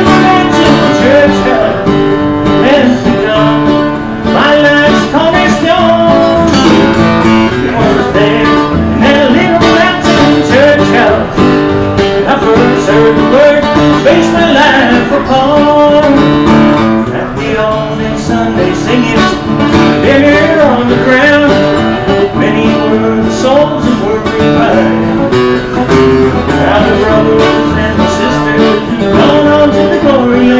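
Acoustic guitar strummed steadily through a song, played live by a solo performer.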